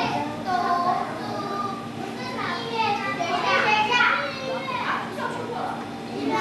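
A group of young children chattering and calling out at once, several voices overlapping.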